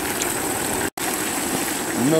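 Pot of mutton boiling hard over a wood fire, a steady bubbling hiss with faint ticks, its cooking water nearly boiled away. The sound drops out for an instant about a second in.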